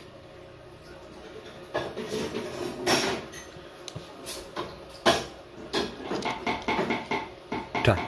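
Bolts being threaded by hand into the metal end cover of a starter motor: scattered small metallic clicks and scrapes of fingers and bolt against the housing.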